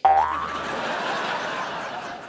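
Cartoon-style 'boing' sound effect punctuating a joke. It starts suddenly with a springy tone that bends upward in pitch, over a steady wash of noise that lasts the rest of the two seconds.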